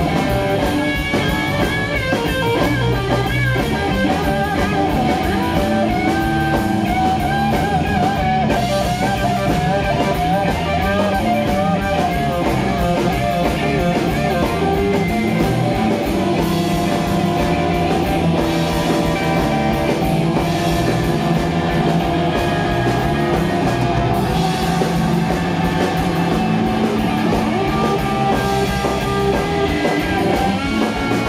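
Live blues-rock band: a Fender Telecaster electric guitar playing a lead solo with wavering, bent notes over bass guitar and a drum kit.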